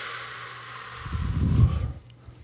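A man's long breath out close to a microphone: a smooth hiss, with a low rumble of breath buffeting the mic from about a second in that stops just before the end.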